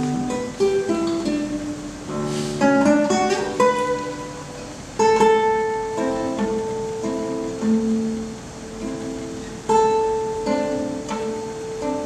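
Acoustic guitar played solo: plucked single notes and chords, each struck and left to ring out, with louder chords about two and a half, five and ten seconds in.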